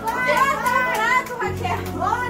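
Excited voices of a gathered crowd of adults and children calling out, over background music whose steady low notes come in about one and a half seconds in.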